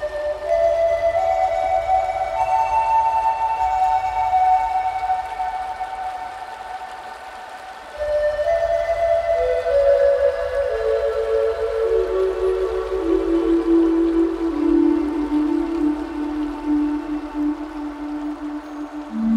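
Relaxing music led by a Native American flute playing slow, long-held notes. A short phrase climbs and fades away, then a new phrase about halfway through steps down note by note to a low note near the end, over a low steady hum.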